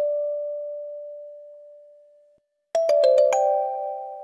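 Kalimba music: a single plucked note rings and fades away, then after a short pause a quick run of about six notes, and they ring on together.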